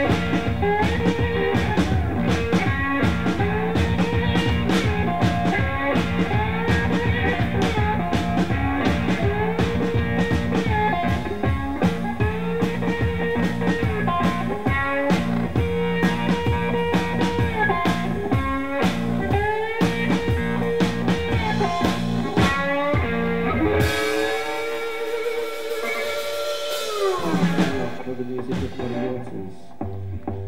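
Live blues played on electric slide guitar and drum kit: the guitar repeats a riff with sliding notes over a steady drum beat. About 24 seconds in, the beat drops out, leaving a high wash. The guitar then slides down in one long fall as the song ends.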